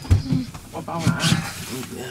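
A low thump at the start, then low, wavering voice sounds without clear words.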